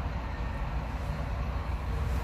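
Outdoor street background: a steady low rumble with no distinct events.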